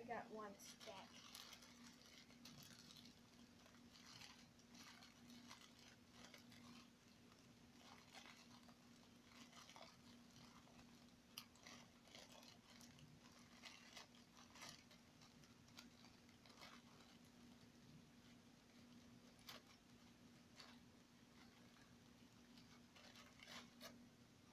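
Faint crinkling and rustling of a graham cracker sleeve's plastic wrapper as it is opened and crackers are taken out, with scattered small clicks and crackles, over a steady low hum.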